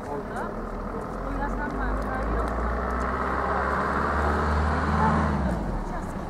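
A road vehicle passing close by: a low engine and tyre rumble that builds from about a second and a half in, is loudest around five seconds, then drops away. Voices chatter in the background.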